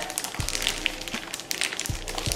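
Thin clear plastic bag crinkling in irregular crackles as it is handled and turned, with a few low thumps from handling, over faint background music.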